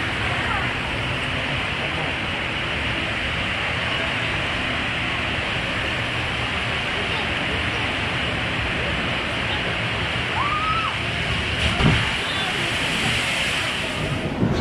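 Steady rush of churning water pouring down the concrete channel of a whitewater bathtub ride, with a brief louder splash or bump near the end.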